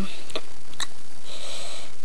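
A person sniffing, drawing a breath in through the nose in a pause between words, after a couple of short clicks.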